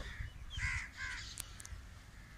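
A bird calling twice in quick succession, two short harsh calls, followed by a couple of brief sharp clicks.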